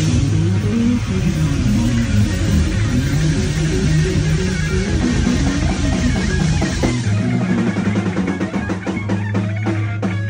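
Rock band playing live and loud: electric guitar, bass and drum kit. About seven seconds in, the lowest end thins out while the guitar and drum hits carry on.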